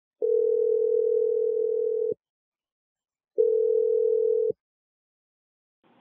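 Telephone ringback tone heard on the caller's line: a steady low tone rings twice, the first ring about two seconds long and the second shorter, as the dialed call rings through.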